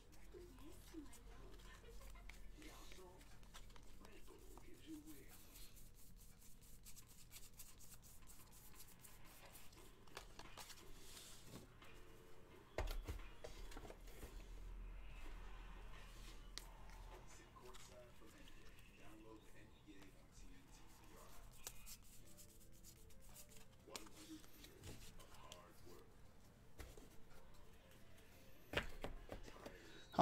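Faint handling of trading cards: light clicks and rustles as cards are flipped and stacked, with a soft knock about thirteen seconds in and another near the end.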